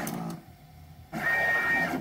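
Charmhigh T48VB desktop pick-and-place machine's gantry motors moving the placement head: a short hum at the start, a pause, then a steady high whine of under a second about midway, rising and falling at its ends.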